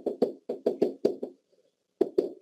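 Pen knocking and tapping against an interactive whiteboard while letters are written: a quick, uneven run of about seven short knocks that stops about a second and a half in.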